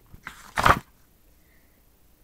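A picture-book page turned by hand: one short paper swish in the first second.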